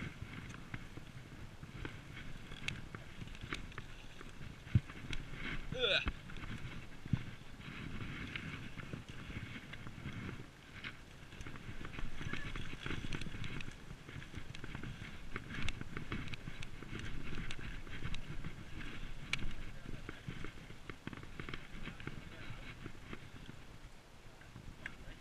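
Mountain bike riding down a rough, muddy dirt trail: tyres rumbling over the ground, with the bike rattling and knocking sharply over bumps many times.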